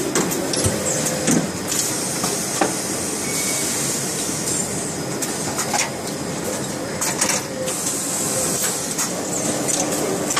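Steady hiss and hum of running garment-finishing machinery, with scattered short clicks and knocks of metal parts and hangers.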